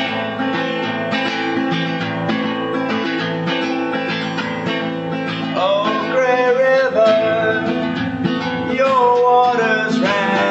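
Acoustic guitar strummed steadily through an instrumental passage between a song's verses.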